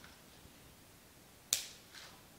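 A single sharp snip about one and a half seconds in, as floral shears cut through a flower stem, over faint room tone.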